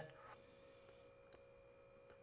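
Near silence: room tone with a faint steady hum and two faint clicks about a second in.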